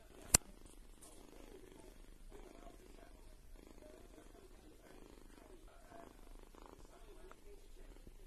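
A kitten purring quietly and steadily, the purr coming in stretches of about a second with brief pauses between them. One sharp click sounds just after the start.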